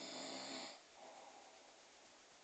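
A sleeping person snoring: one snore of under a second right at the start, followed by a fainter, shorter breath sound about a second in.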